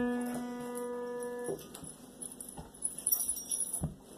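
A single piano note, struck just before, rings and fades, then stops about one and a half seconds in. Faint scattered small sounds follow, with a soft thump near the end.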